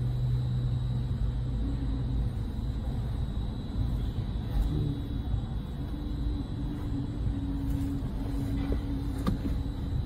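Steady low background rumble with a faint hum and no distinct events.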